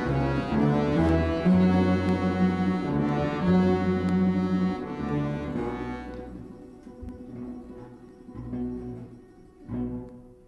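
Russian folk orchestra of domras, balalaikas and bayans playing sustained chords over low bass notes. The music dies away about five or six seconds in to soft, scattered notes, with one brief swell near the end.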